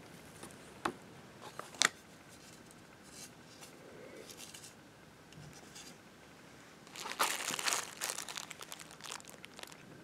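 Clear plastic blister packaging and the plastic bags of an electronics kit being handled: a few sharp plastic clicks in the first two seconds, faint rustling, then a burst of crinkling from about seven seconds in.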